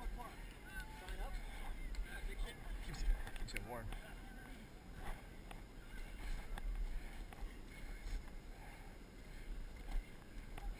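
Scattered shouts and calls from people on the slope, with short rising and falling voice glides. Under them runs a low rumble, with a few knocks from the camera jolting as its wearer climbs.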